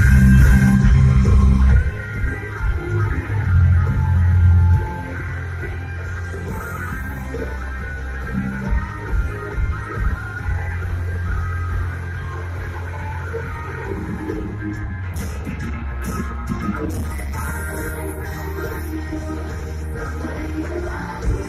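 Rock music with electric guitar and a heavy bass beat, loudest in the first five seconds. A voice sings near the end.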